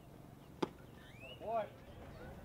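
A pitched baseball makes a single sharp impact about half a second in, followed about a second later by a short shouted call.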